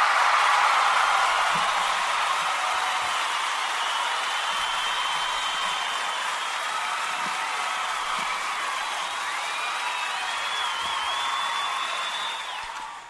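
Crowd applause and cheering, most likely a canned sound effect, that starts suddenly at full strength and eases off only slightly, with a few whistles through it, one rising and wavering near the end.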